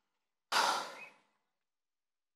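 A short, close exhale into a microphone about half a second in, starting abruptly and fading out within about half a second, with dead silence on either side.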